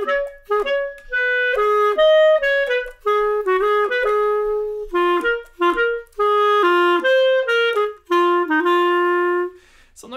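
Solo clarinet playing a swung jazz-waltz phrase, short detached notes mixed with held ones, ending on a long held note near the end.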